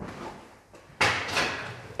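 A door in a derelict building being pushed open: a sudden loud scrape about a second in, fading away over most of a second.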